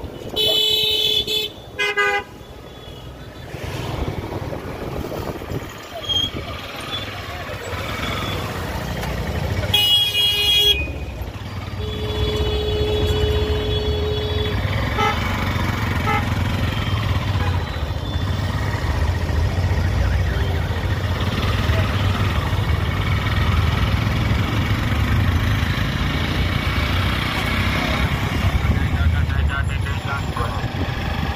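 Busy city road traffic with vehicle horns: two short horn blasts in the first two seconds, another about ten seconds in, and a long held horn note from about twelve to fourteen seconds, over a steady engine rumble.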